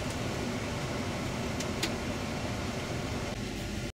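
Steady rumble and hiss of a Setra coach's engine and tyres on the road, heard from inside the cabin, with two brief light clicks about a second and a half in. The sound cuts off abruptly just before the end.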